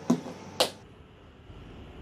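Two sharp knocks about half a second apart as a glass bottle of sweet soy sauce is handled and set down on a table.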